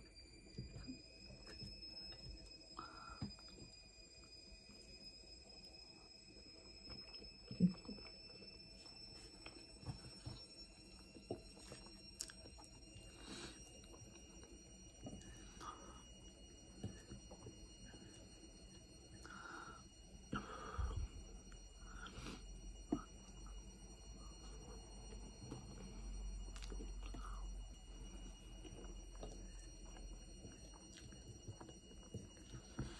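Quiet eating sounds: a wooden fork scooping and tapping on a plate of curry and rice, with soft chewing, and one sharper knock about seven and a half seconds in. A faint steady high whine runs underneath.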